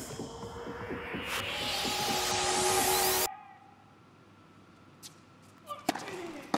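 Electronic transition sound effect: a swelling whoosh that rises steadily in pitch and cuts off suddenly a little over three seconds in. It is followed by near quiet, then a single sharp knock near the end.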